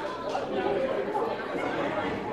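A group of people chattering at once, several voices overlapping with no single speaker standing out.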